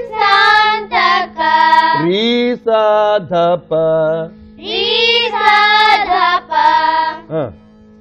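Children's voices singing a Carnatic-style devotional song line by line in short phrases, the notes gliding and wavering, over a steady drone.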